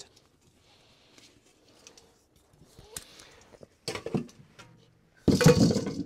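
Faint rustling and small clicks as a steel helmet is lifted off the head, then, near the end, a loud sudden clatter of steel helmets knocking together with a short ring as one is picked out of a pile.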